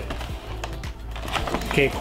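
Cardboard figure box and its plastic blister tray being handled and slid open, a scatter of light clicks and crackles.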